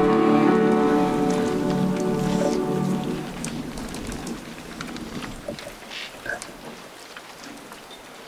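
A group of voices singing a hymn, holding the final notes, which fade away about three seconds in. After that, only faint crackling and rustling open-air background remains.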